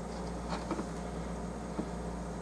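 Hands picking cotton shreds out of a small plastic cup, giving a few faint soft ticks and rustles over a steady low hum.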